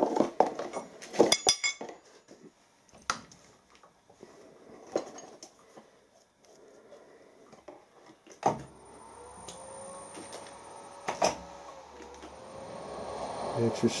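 Steel spanner clinking against a milling machine's spindle nose as the collet holding a reamer is tightened, followed by a few single clicks. About two-thirds of the way in the mill's spindle is switched on with a thump and runs with a low hum and a faint whine, with one more knock a little later.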